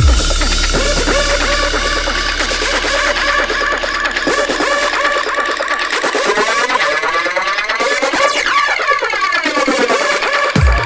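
Electronic music without vocals: a deep bass note enters at the start and slowly fades, under wavering synthesizer tones, with a sweeping, filtered passage near the end.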